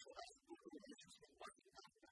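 A man's voice lecturing at a lectern microphone; only speech, recorded faintly.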